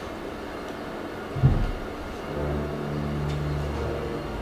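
A dull low thump about a second and a half in, then a steady low hum on two held pitches.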